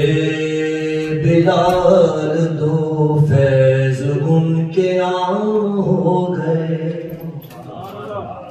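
A man's voice chanting an Urdu devotional poem (naat) in long, drawn-out melodic phrases, trailing off near the end.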